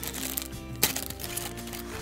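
Background music with steady held notes, over the crinkling of a clear plastic parts bag being pulled open by hand, with one sharp crackle just under a second in.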